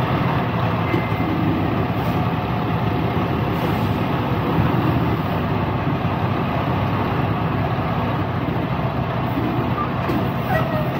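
Tractor-trailer's diesel engine running steadily as the truck rolls slowly, heard from outside the cab.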